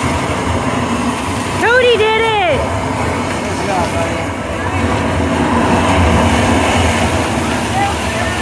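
Water jetting and splashing from a rockwork water feature, a steady rush of water. About two seconds in, a child's voice briefly calls out a rising-and-falling 'whoa'.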